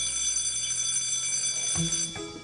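Electric school bell ringing steadily, cutting off near the end.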